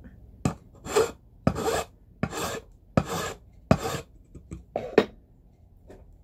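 Small hand file rasping across the top of a metal rivet in about seven strokes, a little over half a second apart, with a short pause before the last. The rivet head is being filed flat before it is hammered over.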